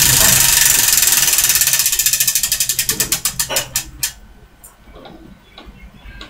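A prize wheel spinning, its pointer clicking rapidly past the pegs. The clicks slow and space out until the wheel stops about four seconds in.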